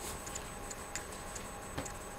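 Faint light ticks at uneven spacing, a few a second, over quiet room tone, with one sharper click near the end.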